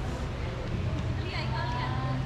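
Indistinct voices of people talking in the background, with one clearer voice about a second in, over a steady low hum.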